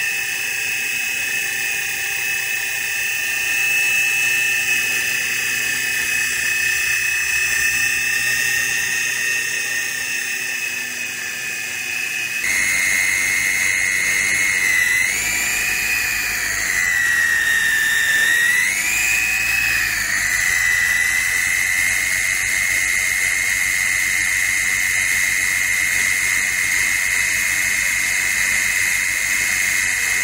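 Small battery-powered RC toy helicopter's electric motors and rotor blades giving a steady high-pitched whine. The pitch dips and rises again twice about halfway through as the throttle changes.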